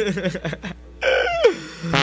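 Short, choppy sampled calls with wavering pitch, then a single call about a second in whose pitch falls steeply. They sound in a break of a funk track with no beat.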